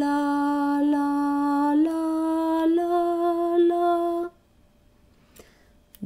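A woman singing a slow melody on "la": long held notes that step upward in pitch, ending about four seconds in.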